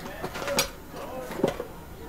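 Three light clicks or knocks spread over two seconds, the sharpest a little over half a second in, with a faint murmur of a voice under them.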